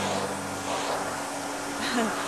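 Small electric desk fan running with a steady whirring rush of air and a faint low hum, working again after being repaired.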